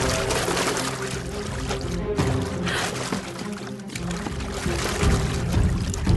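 Water splashing and churning as a person plunges in and thrashes about, over a sustained orchestral music score.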